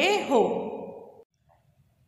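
A woman's voice finishing a word and trailing off, fading out a little past the middle, then near silence.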